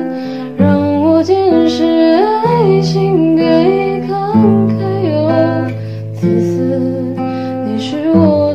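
A voice singing a slow Mandarin pop ballad to acoustic guitar accompaniment, a new sung phrase starting about half a second in over held bass notes.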